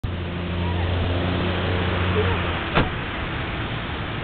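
Steady background hiss with a low droning hum for the first half, and one sharp click about three seconds in.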